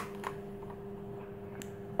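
Faint clicks of small plastic toy pieces being pressed onto a plastic display base, twice, over a steady low hum.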